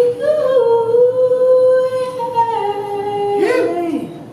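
Solo female voice singing a cappella, without words: a long held note that steps down to a lower one, then slides down near the end as the song closes.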